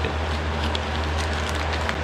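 Steady low hum and hiss of room noise, with a few faint ticks.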